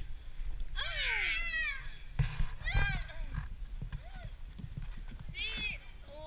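A small child's high-pitched squeals while playing: one long falling squeal about a second in, then three shorter cries.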